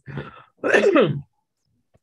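A man clearing his throat: a rough rasp, then a short voiced sound falling in pitch, ending about a second and a quarter in.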